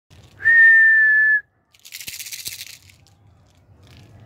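One long, steady, high whistle held at a single pitch for about a second, aimed at a flock of pigeons flying overhead. A brief hissing rustle with a couple of clicks follows just after.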